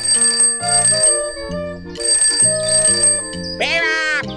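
Background music with a bright bell that rings in two pairs of short bursts, like a telephone ringtone. Near the end comes a gliding, voice-like cartoon sound.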